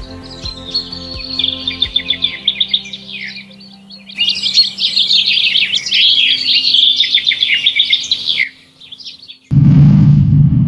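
Songbirds singing in quick, warbling phrases, loudest from about four seconds in, over soft background music with held notes. Near the end a sudden low whoosh starts.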